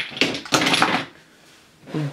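Plastic and glass makeup bottles and tubes clattering as they are tossed into a bin, a dense run of rattling knocks that stops about a second in.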